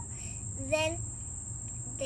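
Insects singing: a steady, high-pitched chorus that does not change, with a brief child's vocal sound a little under a second in.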